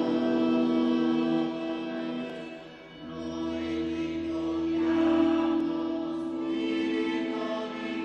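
Choir singing a slow hymn in long held notes. The singing dips briefly just before three seconds in, then the next phrase begins on a new chord.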